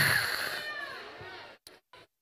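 The tail of a man's shouted, microphone-amplified phrase dying away in the hall's echo over about a second and a half, then near silence.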